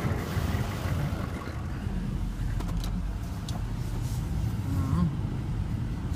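GMC Sierra 2500 plow truck idling with a steady low rumble, warmed up, with a few light clicks and taps in the middle.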